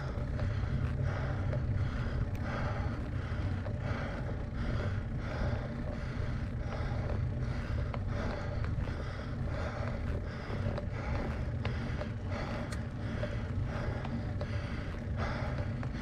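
A bicycle being pedalled slowly up a very steep road: a steady low rumble of road and wind noise, with a faint rhythmic pulse about every half second that keeps time with the pedal strokes under hard effort.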